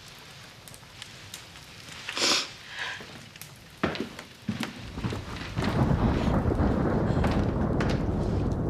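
Thunderstorm: rain in the background, then about five seconds in a long, low rumble of thunder builds and keeps on. A few small clicks and a short hiss come before it.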